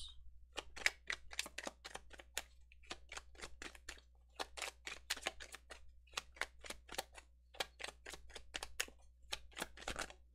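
A tarot deck being shuffled by hand: a quick, irregular run of soft card clicks and taps, several a second, as the cards are shuffled before clarifier cards are drawn.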